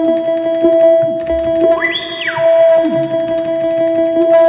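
Elektron Analog Four analog synthesizer playing a repeating pattern of triangle-wave notes at one steady pitch. About halfway through, the filter cutoff is swept up and back down, opening a squelchy, bright sweep of overtones that then closes again.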